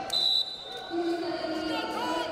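Referee's whistle blown once in a short, sharp blast, calling a stop to the ground wrestling. Voices in the arena carry on around it.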